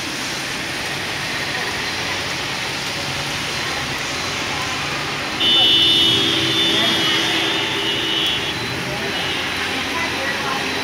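Heavy monsoon rain and wind making a steady loud hiss. About halfway through, a vehicle horn sounds for about three seconds.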